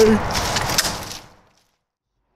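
Splashing and flapping of a freshly shot wild turkey thrashing in a shallow puddle, fading out to silence about a second and a half in.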